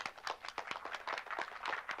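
An audience clapping: light applause made up of many separate hand claps, with no voice over it.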